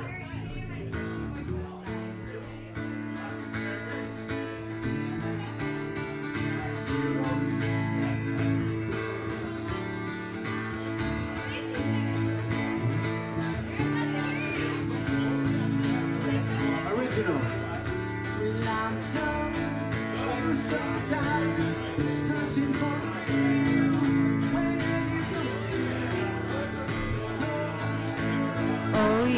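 Band music with guitar over a steady beat, with voices now and then.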